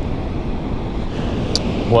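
Steady wind buffeting the microphone over the rush of ocean surf, with a short click near the end.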